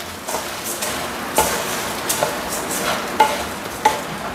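A wooden spatula stir-fries raw rice grains in oil in a nonstick pan, making a steady rustling scrape with a light sizzle. The spatula knocks sharply against the pan a few times. The raw rice is being toasted in the oil over low heat so the grains soak it up before they go into the rice cooker.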